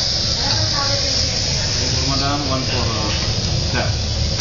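Seafood sizzling as it cooks, a steady hiss, with voices faintly underneath.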